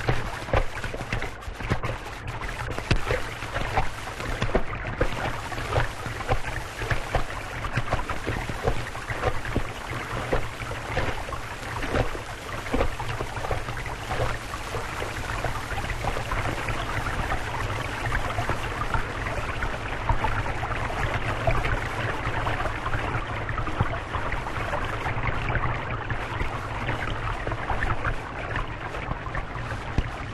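Shallow rocky stream running and babbling, with a steady low hum underneath.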